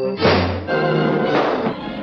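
Cartoon orchestral score with a sudden loud hit about a quarter of a second in, a comic punch sound effect, followed by busy orchestral music that thins out in the second half.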